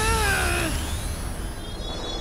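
A cartoon monster's wailing cry that falls in pitch and ends within the first second, followed by a thin high ringing tone with a faint rising electronic shimmer: the sound effects of defeated Bakugan being knocked out of battle and shrinking back into balls.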